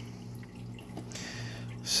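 Aquarium water trickling and dripping over a steady low hum.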